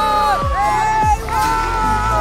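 Electronic background music: held synth notes over deep bass drum hits that drop sharply in pitch.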